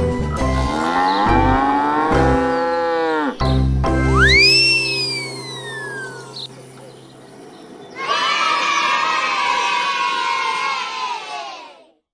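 A cow mooing over background music with a low beat, then a high swooping whistle that rises and slowly falls, about four seconds in. A second long, many-pitched sound starts about eight seconds in and fades out at the end.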